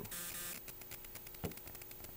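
Faint handling noise from a handheld camera being swung from one meter to another: a soft hiss, then a run of small clicks with one sharper click about one and a half seconds in, over a faint steady hum.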